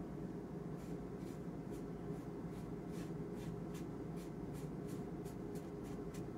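Paintbrush stroking back and forth on watercolor paper, about two to three strokes a second, faint over a steady low hum.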